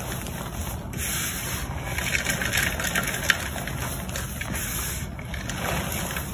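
Soft, powdery gym chalk squeezed and crumbled between bare hands: a hissing, crunchy crumble that comes in waves as the fists close and open, with a few sharp crackles, the loudest about three seconds in.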